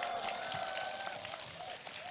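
Audience applauding, not loudly, with a voice or two calling out.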